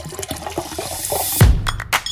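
Background electronic music: a hissing sweep builds up, then a deep kick drum and beat come in about one and a half seconds in.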